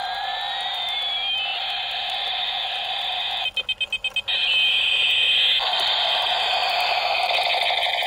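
Battery-powered toy helicopter's electronic sound effects from its small built-in speaker: a steady buzzing tone with siren-like sweeps rising and falling in pitch, broken about three and a half seconds in by a quick run of about seven beeping pulses.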